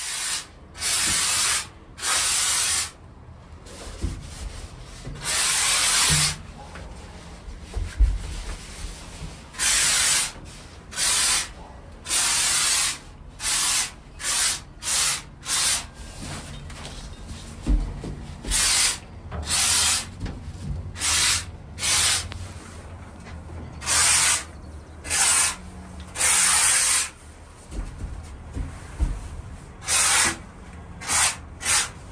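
Handheld spray foam gun hissing in short repeated bursts, each half a second to a second and a half long with brief gaps, as insulating foam is sprayed into the wall framing of a steel shipping container.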